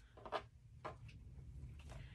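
Scissors cutting across sewn fabric, trimming the excess from a boxed bag corner: a few faint snips.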